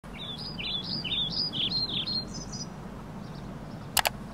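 A songbird singing a quick series of rising and falling chirps that stops about two and a half seconds in, over a steady low outdoor background noise. A sharp click comes right at the end.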